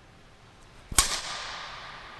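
A badminton racket strikes a shuttlecock once in an overhead stroke, a sharp crack about a second in that echoes and dies away through the sports hall.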